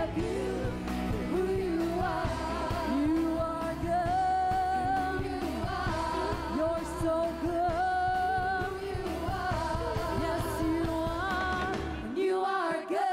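A worship team of several women singing a gospel praise song in harmony over a live band, with long held notes that waver in pitch.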